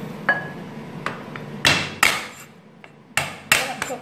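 Kitchen knife striking garlic cloves on a wooden cutting board, about seven sharp, irregular knocks as the garlic is smashed and chopped.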